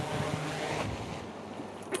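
Yuneec H520 hexacopter's six rotors whirring as it descends onto its landing pad; the sound drops away a little after a second in as it touches down and the motors stop. Wind on the microphone.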